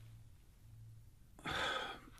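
A man's quick audible in-breath about one and a half seconds in, drawn just before he starts to speak, over faint room tone with a low hum.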